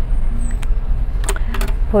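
A steady low rumble, with faint voices about halfway through.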